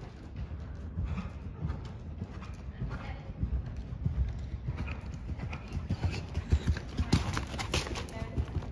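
Hoofbeats of a horse cantering on a soft sand arena surface: a run of dull, uneven thuds that get louder near the end.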